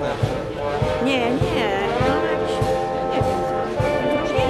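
Wind band playing a march: held brass chords over a steady low beat, about two to three beats a second.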